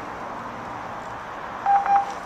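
Steady background hiss, then a short electronic beep about a second and a half in: the alert tone of an overhead paging system just before a page is announced.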